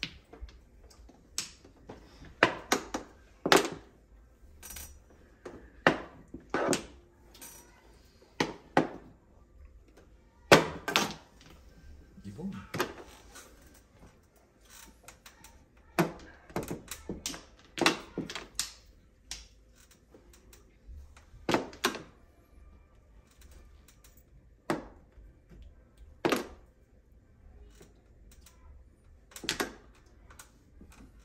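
Mahjong tiles clacking as they are drawn and discarded onto the table and knocked against other tiles: sharp, irregular clicks, some in quick clusters of two or three, with gaps of a second or more between.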